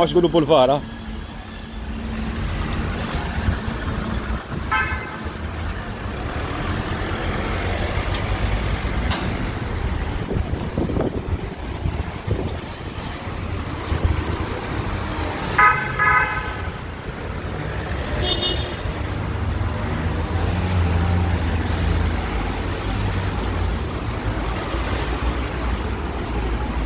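Street traffic running steadily, with a few short car-horn toots; the loudest comes about two-thirds of the way through, with fainter ones earlier and just after it.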